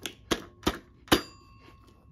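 The bell inside a 1972 ENTel CSEA TLF300 rotary telephone, its clapper knocking the gong as the phone is moved by hand: four single dings about a third of a second apart, the last loudest, each with a brief ringing tone.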